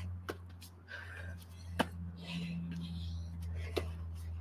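Burpees on an exercise mat: three sharp thuds of hands and feet landing, with hard breathing between them, over a steady low hum.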